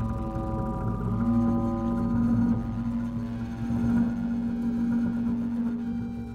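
Double bass played with the bow, layered with live electronic sound. It makes a dense, grainy texture of stacked held tones over a low rumble, and one steady tone starts about a second in and is held through the rest.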